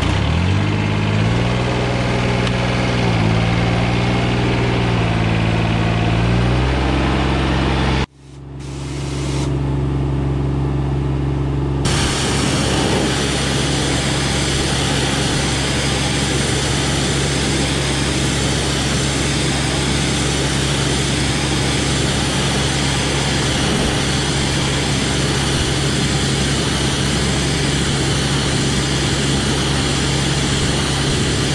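A John Deere lawn tractor's engine, just started, running with its speed rising and falling. After a sudden cut, an engine runs steadily, and about four seconds later the loud hiss of a pressure washer spray joins it, blasting water back through a diesel particulate filter to flush out soot.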